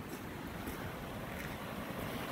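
Steady rush of muddy water flowing out of a culvert pipe that has just been cleared of its clog.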